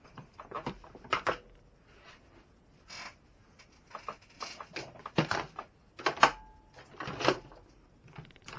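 Parts and tools being handled and set down on a workbench during disassembly of an RC truck: a scattered run of clicks and knocks. The loudest are three sharp knocks about five, six and seven seconds in, the middle one followed by a brief ringing.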